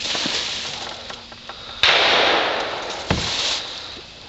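Rustling and crunching in dry leaf litter and plastic rubbish as someone moves through it, with a sudden loud rustle about two seconds in that fades away and a low thump about a second later.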